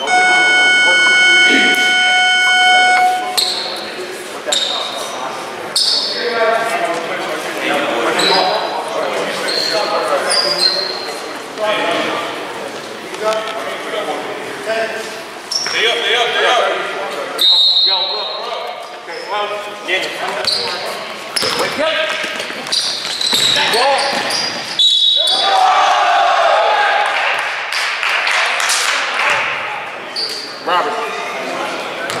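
An electronic gym buzzer sounds one steady tone for about three seconds at the start, marking the end of a timeout. After it come basketball bounces and shouting voices that echo around the hall.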